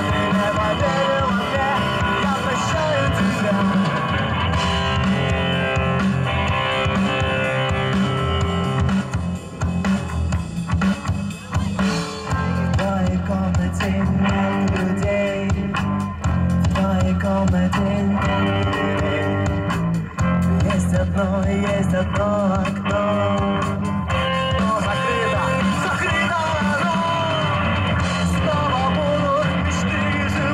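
A rock band playing live through a PA: a lead singer over electric guitar, bass guitar and drum kit, with the band thinning out briefly about ten seconds in.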